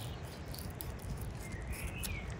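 Knife cutting the skin away from a raw sturgeon fillet on a wooden board, with scattered light clicking over a low outdoor rumble; a bird chirps briefly near the end.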